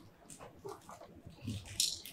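Faint, scattered vocal sounds from people in the room, then a short sharp hiss near the end.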